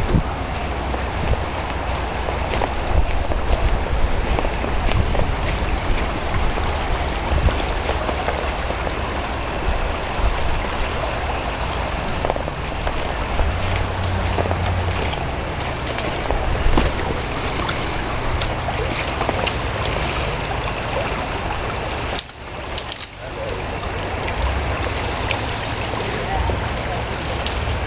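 Steady rushing of a fast-flowing river, heard under a low, fluttering rumble on the microphone, which dips briefly near the end.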